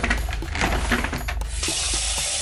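A bathroom washbasin tap turned on, with a few clicks and knocks of handling at the sink, then water running steadily into the basin from about one and a half seconds in.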